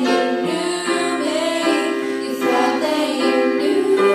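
Two girls singing a pop ballad with electric keyboard accompaniment, holding long notes over sustained chords.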